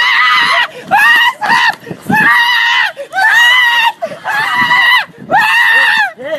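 A person screaming over and over in a high-pitched voice: about seven cries in a row, each under a second long, rising and then falling in pitch, with short breaks between them.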